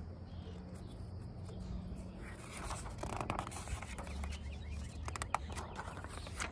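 Paper pages of a large picture book being turned and pressed flat by hand: a paper rustle a couple of seconds in, then a few sharp crackles near the end, over a low steady rumble.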